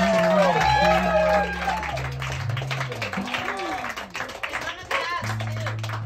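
Live band's guitars ringing out held chords at the end of a song, the low notes changing every second or two. Audience voices and scattered clapping come over them, loudest in the first two seconds.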